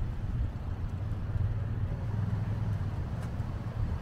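Steady low rumble of road traffic beside the seafront, with no distinct single events.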